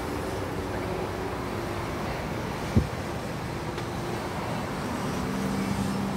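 Steady street traffic noise, with a car's engine hum rising as it drives past near the end. One sharp knock a little under three seconds in is the loudest moment.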